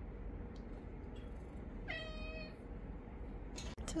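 A domestic cat meows once, a single short call held steady in pitch, about halfway through.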